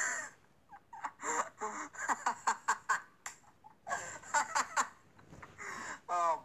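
A person laughing in quick, short bursts, with a second round of laughter about four seconds in.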